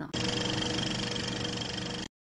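Film-projector sound effect: a steady, fast mechanical rattle with a thin high whine, which cuts off suddenly at the end.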